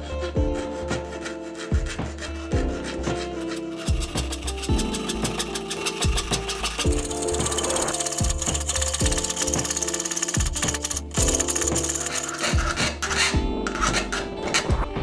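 Jeweler's saw cutting through a stack of thin sheet metal, a fast run of fine rasping strokes that starts a few seconds in and goes on nearly to the end, with a short break about three quarters of the way through. Background music plays throughout.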